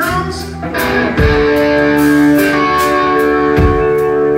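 Live band with electric guitars, bass and drums playing. About a second in the band lands on a held chord that rings on, with a heavy drum hit there and another near the end.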